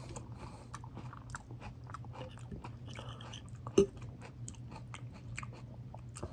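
A person chewing a mouthful of salad close to the microphone, with many small wet crunches. One louder sharp click comes a little before four seconds in, over a steady low hum.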